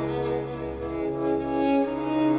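Small string ensemble of violins, cello and double bass playing slow, sustained chords, the harmony shifting near the end.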